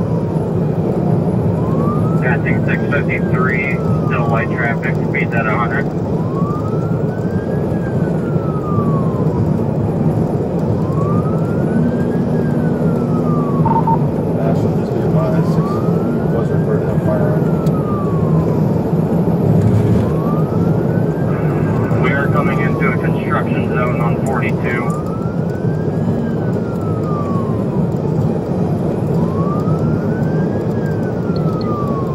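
Police cruiser siren on a slow wail, rising and falling about once every four and a half seconds, heard from inside the car over heavy engine and road noise at high speed.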